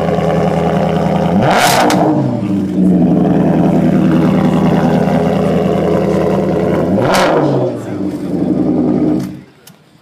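Maserati Spyder V8 running at the exhaust, blipped twice, about one and a half seconds in and again about seven seconds in, each rev rising sharply and falling back. The engine stops shortly before the end.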